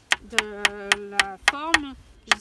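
A small hammer tapping a nail into a wooden slat with quick, light, evenly spaced strikes, about three or four a second.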